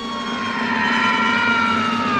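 Falling-whistle sound effect of a body dropping from high in the sky. A pitched whistle slides slowly down in pitch and grows steadily louder as it falls.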